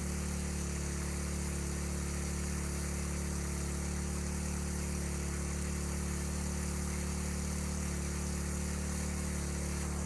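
A 3 hp portable fire-fighting water pump's engine running steadily at full throttle, pumping at nearly maximum water volume, with the hiss of the hose nozzle's spray.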